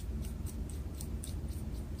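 Faint light ticks and rubbing from the brass pen parts of a disassembled Fisher Bullet Space Pen being handled in the fingers, over a steady low room hum.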